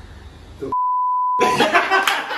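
A single steady, pure high-pitched beep lasting under a second, with all other sound cut out beneath it: an edited-in censor bleep. It is followed straight away by loud laughter and clapping.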